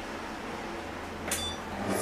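Quiet kitchen room tone with a faint low hum, and one short click with a brief high ring about a second and a third in.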